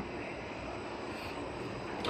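Steady, even background noise of a factory hall, with no single machine sound standing out.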